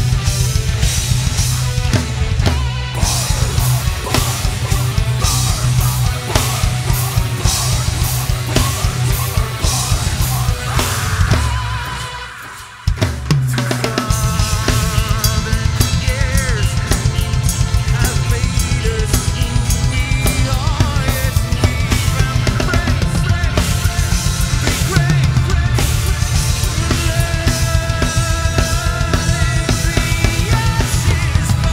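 Heavy metal band playing live, led by a Tama Starclassic drum kit with a fast, steady kick-drum pattern, snare and cymbals under electric guitars and bass. About eleven seconds in the music thins and fades away for a couple of seconds, then the full band comes back in all at once.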